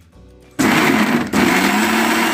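Prestige mixer grinder switched on about half a second in, its motor running loudly as it grinds coconut pieces, peanuts and green chilli in the steel jar, with a brief dip in the sound a little later.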